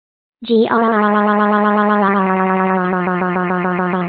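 A text-to-speech voice drawing out an angry growl, "Grrrrrr", as one long, steady-pitched tone, starting about half a second in and lasting over three seconds.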